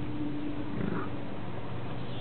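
Steady low hum of a car driving slowly, heard from inside the cabin, with a short grunt-like sound just under a second in.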